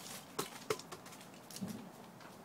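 A few light clicks and taps from hands handling the bar and chain of a Husqvarna chainsaw, with a brief low hum about one and a half seconds in.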